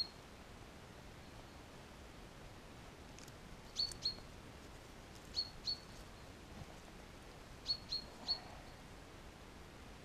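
A small songbird calling: short, high chirps in quick groups of two or three, repeated a few times from a few seconds in. A faint steady hiss lies underneath.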